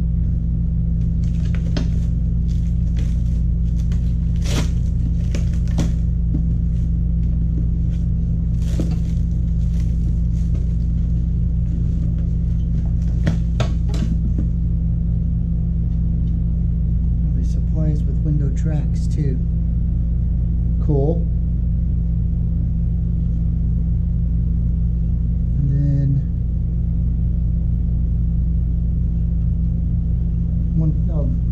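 Plastic shrink-wrap crinkling and the metal parts of a power window regulator clicking as they are handled and unwrapped, a run of sharp crackles mostly in the first half. A steady low hum lies under it.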